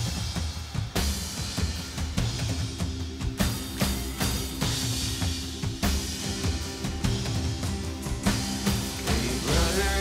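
Live band playing the instrumental opening of a folk-rock song, with a steady drum-kit beat under bass and guitars. It starts abruptly at full volume, and a voice begins to come in near the end.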